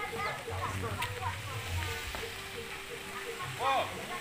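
Faint, indistinct voices of people talking over a low background rumble, with one sharp click about a second in.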